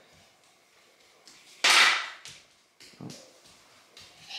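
A single sudden sharp bang about a second and a half in, fading over half a second, in an otherwise quiet kitchen.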